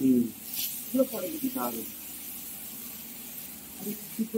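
A woman speaks in two short phrases in the first two seconds, with a brief hiss about half a second in. A steady low hiss runs underneath and carries on alone for the last two seconds.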